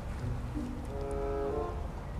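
Steady low outdoor rumble, with a faint, even humming tone that starts about half a second in and fades after just over a second.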